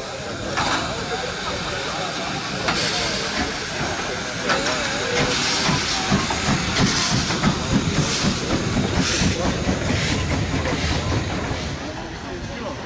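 Steam locomotive 213.901 moving slowly under steam: a steady hiss of steam around the cylinders, with a louder chuff about once a second over the chassis rumble.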